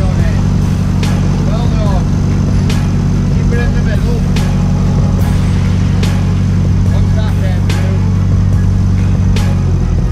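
Narrowboat's diesel engine running steadily at low speed, its note changing just before the end.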